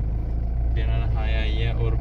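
Steady low rumble of a car's engine and road noise heard inside the cabin, with a woman laughing for about a second near the middle.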